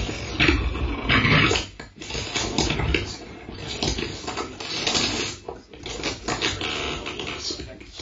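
Live improvised electronic music with turntable scratching: a vinyl record worked back and forth by hand, making choppy, irregular bursts of scratched sound with brief breaks, one of them about two seconds in.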